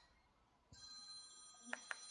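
Faint phone ringtone, a steady chord of high electronic tones that starts about a third of the way in, with two short blips near the end, heard through a TV's speakers.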